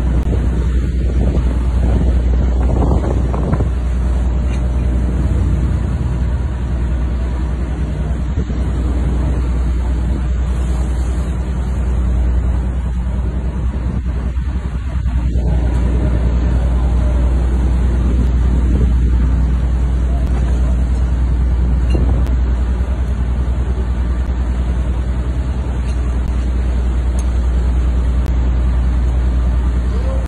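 Steady deep rumble of a ship's engine, with wind buffeting the microphone and the rough sea beneath it.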